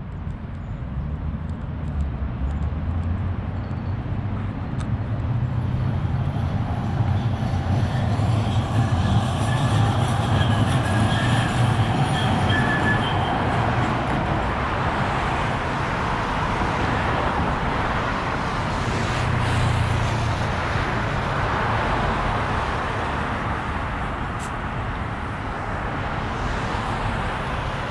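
Street traffic passing close by. A heavy vehicle rumbles past with a faint whine, building to loudest about ten seconds in and fading after about twenty seconds.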